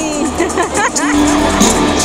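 Live arena concert sound: music with crowd voices, one voice sweeping sharply up and down about halfway through, then a steady held low note.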